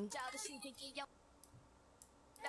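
A voice for about the first second, then near quiet with a faint click or two of a computer mouse.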